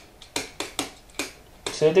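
Marker pen writing on a board: a run of short strokes and taps, a few a second, as letters are written out.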